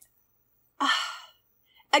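A person's short breathy sigh, a faint voiced "uh" trailing off into exhaled breath, about a second in.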